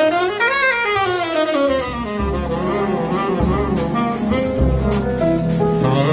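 Tenor saxophone soloing in a slow jazz ballad, over bass and big band accompaniment. Just after the start, a phrase climbs and falls back.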